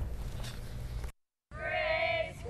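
Low background hum and hiss, broken by a short dropout to silence, then a child's high voice holding one long note.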